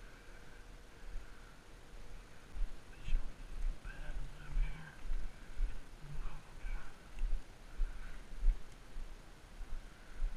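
Footfalls and handling bumps on a body-worn camera microphone while walking along a grassy bank, coming irregularly about twice a second from a few seconds in, with faint distant calls in the background.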